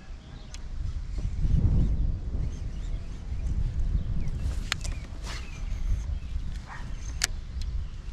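Wind buffeting the microphone, an uneven low rumble that rises and falls, with a few sharp clicks in the second half.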